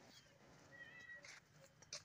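Near silence, with one faint, short, high-pitched animal call about a second in.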